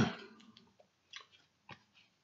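The end of a spoken word, then two short faint clicks, one about a second in and one near the end.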